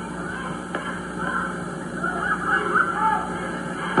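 Gymnasium crowd noise during live basketball play, with short high squeaks from basketball shoes on the court, heard on an old AM radio broadcast tape with a steady low hum.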